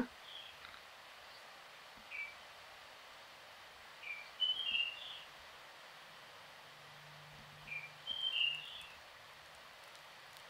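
Faint bird chirps in the background: short high calls in small clusters about two, four to five and eight seconds in, over a quiet hiss.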